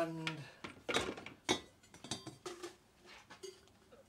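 Copper boiler parts handled on a metal-strewn workbench: several light metallic clinks and knocks, a few with a short ring.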